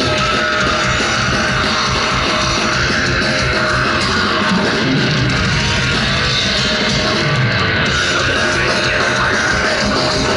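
Extreme metal band playing live through a large festival PA: distorted guitars, drums and a singer's vocals, loud and unbroken.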